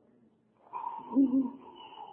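A meeting-hall audience reacting to a question with a brief burst of mixed voices, starting about a third of the way in and lasting a little over a second.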